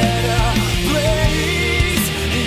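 Rock music from a full band with a steady drum beat, sustained bass and a bending melody line.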